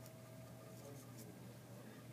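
Faint scratching of a felt-tip marker writing on paper: a few short soft strokes over a low steady room hum.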